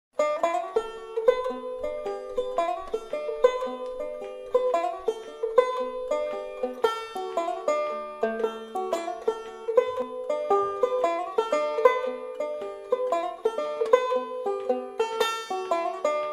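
Instrumental intro of a folk-country song: a plucked string instrument picking a quick, steady run of single notes.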